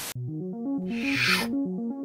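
A brief burst of TV static, then a repeating synthesizer arpeggio with a rushing swell of noise about a second in.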